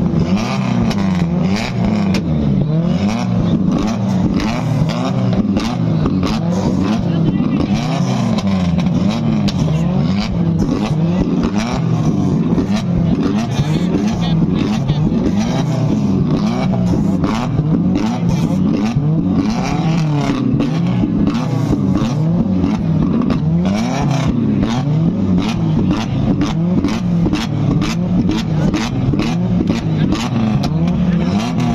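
Modified car engines revved hard again and again, the pitch rising and falling, with rapid crackling and popping from the exhausts. Flames from the tailpipes show unburnt fuel igniting in the exhaust.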